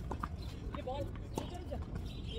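Tennis ball being struck by racquets and bouncing on a hard court during a rally: a few sharp knocks, the loudest about one and a half seconds in.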